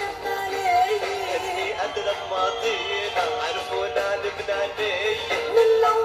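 A woman singing an Arabic pop song into a microphone over musical accompaniment.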